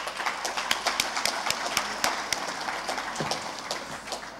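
Audience applauding: many quick, irregular claps that die away near the end.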